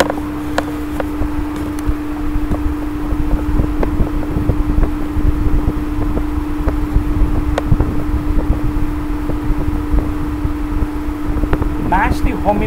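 Steady mechanical background hum: one constant tone over a low rumble, with scattered light clicks.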